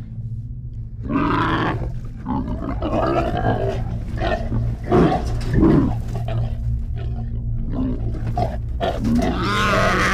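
Pig-like mutant boar creature vocalizing in a run of loud growls, in several separate bursts with the loudest near the end. A low steady drone runs underneath.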